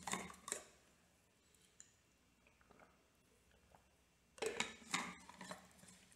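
A man drinking water during a pause, mostly near silence. Faint clinks and knocks of his water container being handled come at the start, and a cluster of them comes from about four and a half seconds in.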